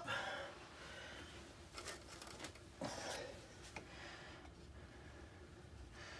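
Faint scattered rustling and light handling noises, with a short knock about three seconds in and a sharp click just before four seconds.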